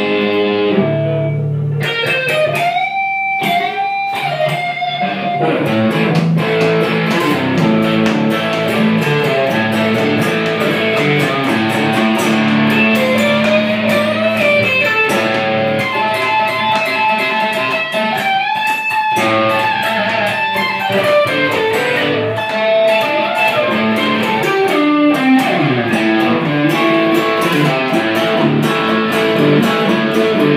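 Semi-hollow-body electric guitar playing an instrumental lead, with sustained notes and frequent bent notes that glide up and down in pitch, over lower held notes.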